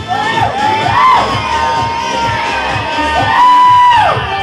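Pop track with a steady beat played loud over a bar sound system, with the audience cheering and high-pitched whoops rising and falling over it, the loudest one held near the end.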